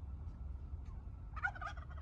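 A flock of domestic turkeys gobbling, a brief cluster of short calls about one and a half seconds in, over a low steady rumble.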